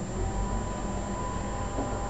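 Steady low hum of a bathroom exhaust fan, with a faint even whine above it, starting as the bathroom is entered.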